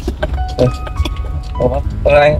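Steady low rumble of a vehicle moving slowly, with music in the background and a couple of brief voice sounds.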